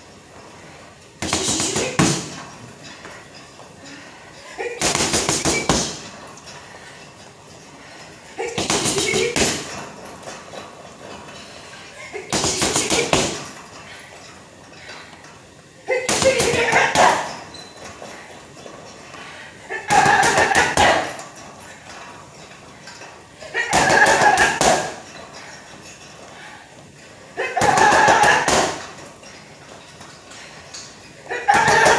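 Gloved punches landing on a hanging heavy bag in quick flurries of several blows. There are eight flurries, each about a second long and about four seconds apart.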